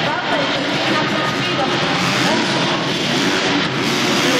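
Motocross bike engines revving up and down as the riders race around the arena track, mixed with the steady noise of the crowd and indistinct voices.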